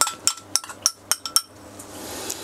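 Metal spoon clinking against a glass bowl of chili sauce as the sauce is spooned out: a quick run of about eight light clinks in the first second and a half, some ringing briefly.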